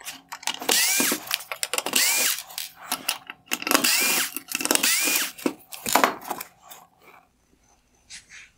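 Cordless electric screwdriver backing four T10 Torx screws out of a plastic headlight projector mount. It makes four short runs, each with a rising whine as the motor spins up, and stops about seven seconds in.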